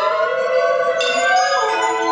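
Hanging ceramic shapes struck with clay-bead mallets, ringing with a sharp strike near the start and another about a second in, over several held tones that slide slowly in pitch.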